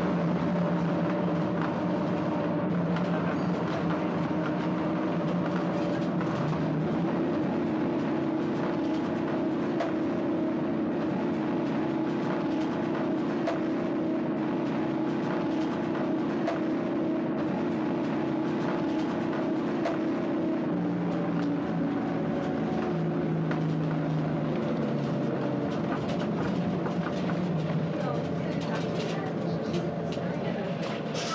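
Bus engine running steadily under way, heard from inside the bus near the front. The engine note drops about two-thirds of the way through as the bus eases off.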